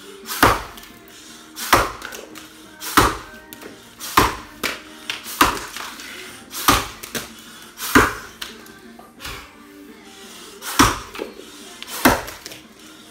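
Axe blows biting into a log in an underhand chop, about eight sharp strikes roughly one every second and a quarter, with a longer pause before the last blow near the end. Background music plays throughout.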